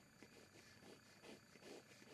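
Faint pencil strokes on paper: a few short, light scratches a fraction of a second apart as rough sketch lines are drawn.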